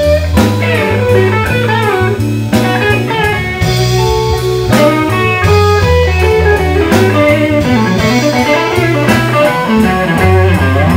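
Live blues band playing a slow blues instrumental passage: a Stratocaster-style electric guitar plays a lead line with bent notes over bass guitar and drums.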